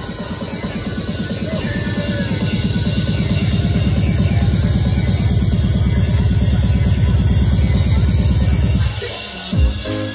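Electronic dance music from a DJ set. A fast, even beat grows louder over the first few seconds, holds, and breaks off about nine seconds in, followed by a single deep boom.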